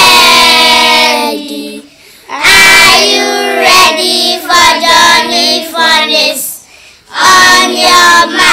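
Young children singing a song, in sung phrases with short pauses about two seconds in and again near seven seconds.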